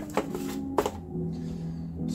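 Two sharp clicks, about half a second apart, as small items and packaging of the microphone kit are handled by gloved hands on a tabletop.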